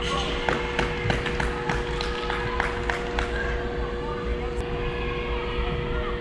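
Indoor soccer arena sound: distant players' voices over a steady two-tone hum, with a quick run of sharp taps over the first three seconds or so.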